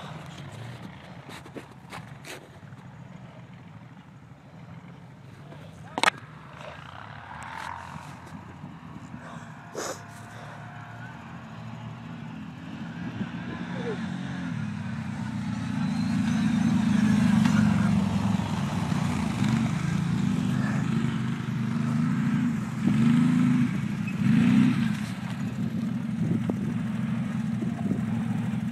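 Two 1000 cc ATV engines, an Arctic Cat Thundercat and a Can-Am, running: faint and distant at first, growing louder through the middle as one quad rides up close, then running steadily close by. A few sharp clicks in the first ten seconds.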